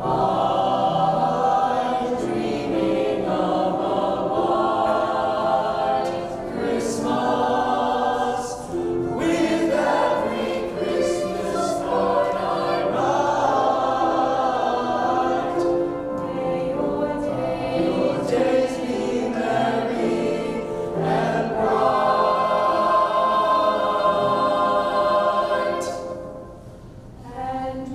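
Mixed choir of high-school boys' and girls' voices singing together in several parts.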